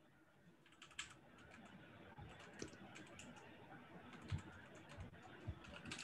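Faint computer keyboard typing: scattered keystrokes that start about a second in.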